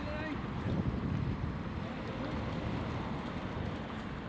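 Wind buffeting the microphone, a steady low rumble, over faint outdoor traffic noise.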